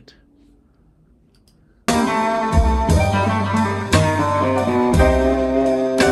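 About two seconds of faint room tone, then band music cuts in suddenly: an archtop electric guitar playing over drums.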